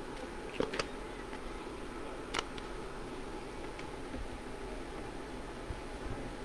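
Steady low background hiss with a few faint, sharp clicks in the first two and a half seconds.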